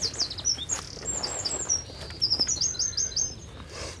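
A songbird singing: short runs of quick, high, falling whistled notes, one run at the start and another in the second half.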